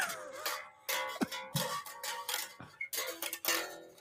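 Red Spector electric bass guitar playing a riff of plucked notes, with a brief break just under a second in, heard thin and quiet through a video call.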